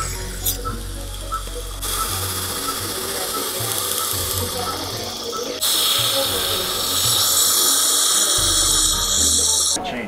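Er:YAG dental laser working on tooth enamel with its water-air spray: a steady hiss with small rapid ticks, the laser being used to seal open dentinal tubules that cause tooth sensitivity. About halfway through, a louder, brighter hiss takes over and stops suddenly just before the end.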